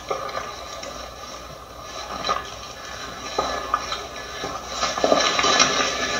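Rustling and scuffing in dry grass and leaf litter as people move through undergrowth, with handling noise from the moving camera; a few short scuffs stand out.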